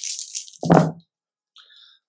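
A handful of five ten-sided dice rattled and rolled, a dry, hissy rattle in the first half-second. A short voiced sound follows about halfway in.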